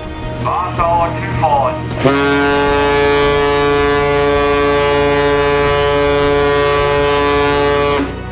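A ship's horn sounding one long, steady blast of about six seconds, starting about two seconds in and cut off suddenly.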